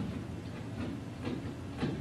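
Stylus tapping and scratching faintly on a tablet screen while writing, a few short ticks over a steady low hum.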